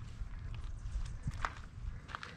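Footsteps on gravel: a few faint steps, over a low rumble.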